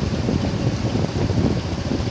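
Wind buffeting the microphone: a steady low rumble with no voice.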